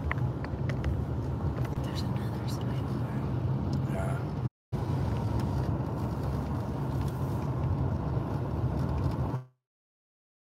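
Road noise inside a moving car's cabin: a steady low rumble of tyres and engine. It drops out briefly about halfway through, then cuts off suddenly to silence near the end.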